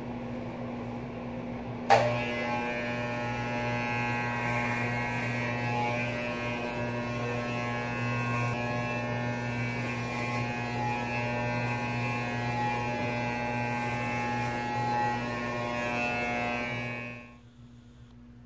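Electric hair clippers start with a sharp click about two seconds in, then run steadily with a buzzing whine as they cut close over the scalp, stopping abruptly near the end. A steady low hum runs underneath throughout.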